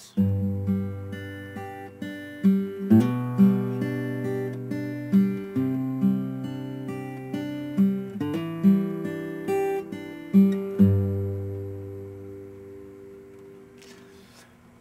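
Guitar fingerpicking a blues verse progression of G, G/B, Cadd9 and G/E in a steady rolling pattern, with hammer-ons into the Cadd9 and on the D string for the G/E. The bass note moves with each chord change. The last chord is left ringing and fades away over the final few seconds.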